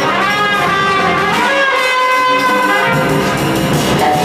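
Live jazz with a brass horn playing a melody of held, slightly bending notes over the band; the bass and low end grow heavier about three seconds in.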